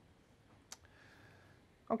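Quiet room tone broken by one sharp click a little under a second in, followed by a faint, thin steady tone for about half a second.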